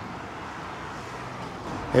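Steady outdoor street background: an even wash of road traffic noise with no distinct events.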